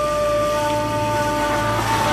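A blur (blul), an end-blown shepherd's flute, holding long, steady notes over a low drone in a song's instrumental intro. A new note enters about half a second in.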